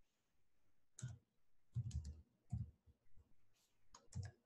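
Faint computer-keyboard keystrokes: several separate, unevenly spaced key clicks beginning about a second in, as a few characters are typed.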